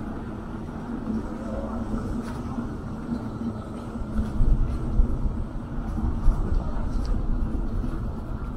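Low, steady outdoor city rumble picked up while walking along a street, with a few louder low bumps about halfway through.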